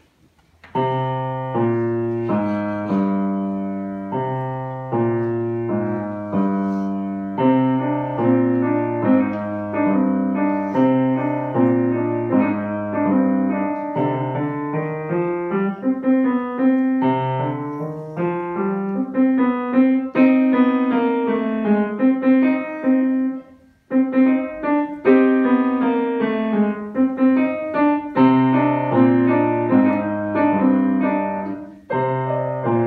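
Solo grand piano being played: a piece with a steady bass line and a melody above it, starting about a second in. The playing breaks off briefly about three quarters of the way through, then carries on.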